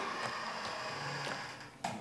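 Faint room hiss in a short pause between a man's spoken sentences.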